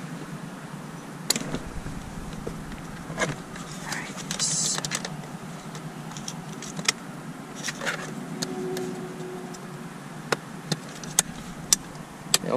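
Plastic clicks and rustling from hands working a wiring connector and pressing a switch into a car's plastic dashboard switch panel: scattered sharp clicks, with a brief scraping rustle about four seconds in.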